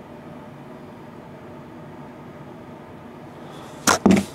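Steady room noise with a faint hum, broken near the end by one sharp click or knock.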